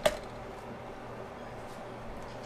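A single sharp metallic click right at the start as the pour lever of a bottom-pour lead melting pot drops back, shutting off the flow of molten lead into the jig mold. A low steady hum runs underneath.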